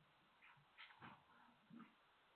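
A dog's few faint, short vocal sounds, clustered in the middle of two seconds, over the steady low hiss of a security camera's microphone.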